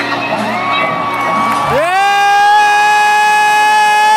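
Concert crowd cheering, with a nearby fan letting out one long, high-pitched 'woo' that rises in about two seconds in and holds steady. A shorter, fainter whoop comes before it.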